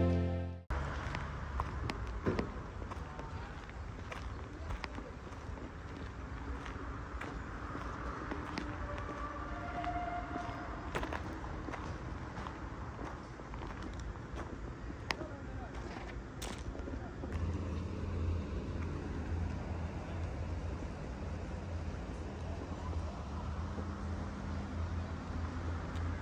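Background music cuts off just under a second in, giving way to outdoor ambience at a building site: a steady hum of distant traffic with scattered light clicks and knocks. A low steady hum joins about seventeen seconds in.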